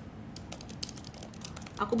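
Typing on a keyboard: a quick run of light key clicks for about a second and a half.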